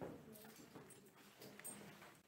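Near silence: faint room noise with light knocks and shuffling from people moving about, with a sharper knock at the very start.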